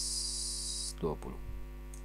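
Steady electrical mains hum with a ladder of overtones under a high hiss that stops about a second in. A brief spoken word follows.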